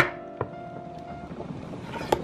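A chef's knife cutting through an apple and striking a wooden cutting board once, sharply, followed by a lighter knock about half a second later.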